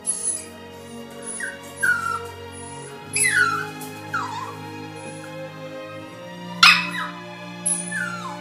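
A Cavalier King Charles Spaniel puppy whimpering in short falling whines, about five of them, over steady background music. A sharp click or knock comes about two-thirds of the way through.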